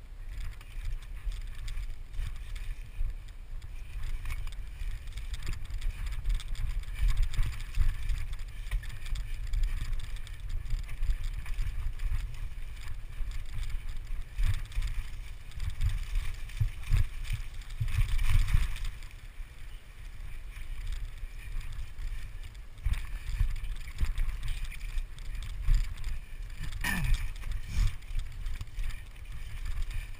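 Mountain bike riding fast down rough dirt singletrack, heard through wind rumble on the camera's microphone, with the rattle and knocks of the bike over the ground. A short squeak falling in pitch comes about three seconds before the end.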